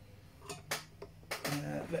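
Two short, sharp clicks, about half a second and three quarters of a second in, from a hand working the plug-in connectors and casings of Genisys ambulance control modules.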